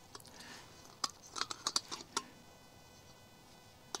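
Camp stove burner being screwed onto an isobutane gas canister by hand: a quick run of small sharp clicks and scrapes from the threaded Lindal-valve connection and metal rim, between about one and two seconds in.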